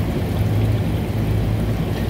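Water from a magnetic CoolPressor attachment running and splashing over a reciprocating refrigeration compressor, cooling it so its tripped internal thermal overload resets. A steady low hum runs underneath.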